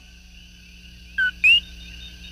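Two short whistles, a brief dipping note and then a quick rising one, about a second and a half in, over a faint sustained tone left after the jingle's closing chords.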